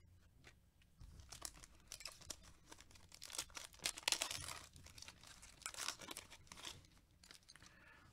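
Foil trading-card pack wrapper being torn open and crinkled by hand. A dense run of crackling rips starts about a second in, is loudest around four seconds, and thins out near the end.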